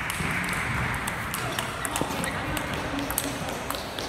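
Table tennis ball being struck by rackets and bouncing on the table in a rally: a series of sharp, irregularly spaced clicks, with a murmur of background voices.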